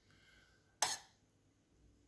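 Near silence, broken once just under a second in by a short, sharp noise.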